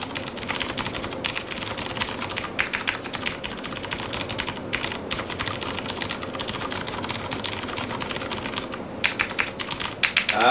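Fast, continuous typing on a Das Keyboard Model S Professional mechanical keyboard: a dense run of key clicks, broken by short pauses about five seconds in and shortly before the end.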